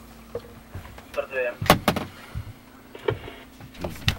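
Steady hum inside a Yak-40 airliner's cabin, with a brief voice just past a second in. Two sharp knocks follow close together near the middle, and another comes just before the end.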